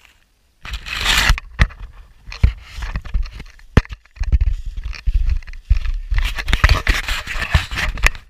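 Close handling noise on a camera mounted on a radio-control model plane. It starts suddenly about a second in, with scraping and rubbing against the airframe and camera and several sharp knocks, as the plane is picked up out of the grass and handled.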